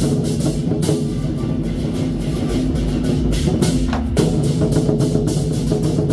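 Chinese war drums beaten by a drum troupe in a fast, continuous rhythm of dense strokes, with sustained pitched tones underneath.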